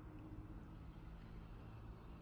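Quiet background: a faint, steady low hum and rumble with no distinct events.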